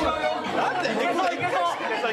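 Only speech: several people talking and exclaiming over one another.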